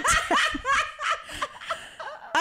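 Two women laughing together, loud at first and trailing off near the end.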